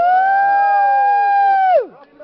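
A man's long, loud, high yell: the voice sweeps up, holds one high note, then drops away sharply near the end.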